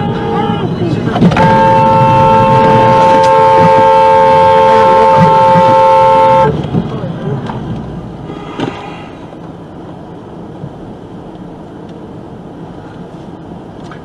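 Car horn held in one long, loud blast of about five seconds, a steady tone of two pitches, starting about a second in. It is followed by quieter road noise.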